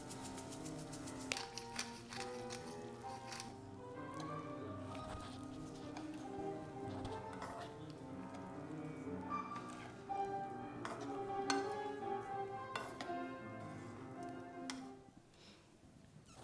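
Piano playing, with a quick run of clicks from a sesame seed shaker in the first second and a few sharp clinks of a spoon against a frying pan later on. The sound fades out shortly before the end.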